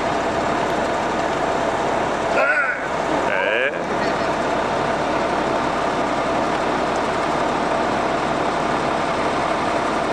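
A parked coach's engine idling steadily, with voices around it. Two short, higher-pitched sounds come in quick succession a little over two and three seconds in.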